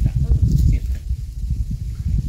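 Low, uneven rumbling noise.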